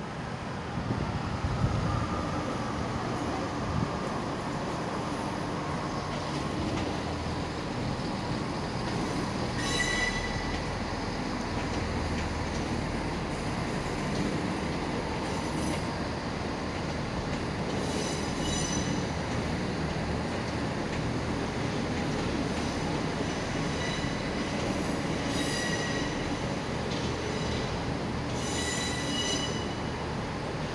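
Transport for Wales Class 158 diesel multiple unit, two units coupled, moving slowly away into a tunnel under a steady engine and rail rumble. Short high-pitched wheel squeals come again and again, about five times.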